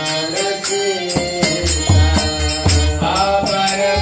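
Devotional kirtan: singing voices over hand cymbals striking a steady beat and a hand drum, which drops out for about the first second and then comes back in.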